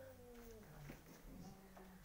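Near silence: room tone, with the faint tail of a pitched call falling away in the first half-second.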